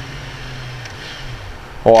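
Honda CB650F's inline-four engine on its stock exhaust, a steady low drone heard from the rider's seat, sinking slightly in pitch as the bike slows for braking.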